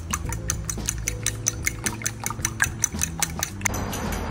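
A metal fork beating raw eggs in a ceramic bowl, clicking against the bowl about five times a second in an uneven rhythm, stopping shortly before the end. Background music runs underneath.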